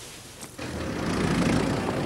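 A car drives along a cobbled street, engine and tyres giving a steady low rumble that cuts in abruptly about half a second in.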